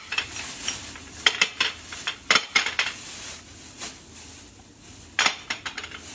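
Glass perfume bottles clinking against each other and against a glass tray as they are picked up and sorted: a string of sharp, irregular clinks.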